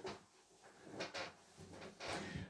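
Faint handling noise from an acoustic guitar being moved and settled into playing position: a few soft knocks and rustles, two of them close together about a second in.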